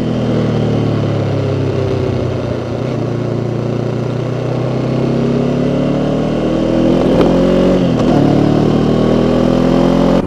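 Motorcycle engine heard close up, its pitch falling over the first few seconds as the bike slows, then climbing steadily as it accelerates, with a brief dip near the end.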